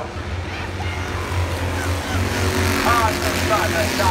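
Stock cars running past on the oval at slow caution speed, the engine noise swelling as the pack comes by, with the track announcer's voice over the public-address system faintly mixed in near the end.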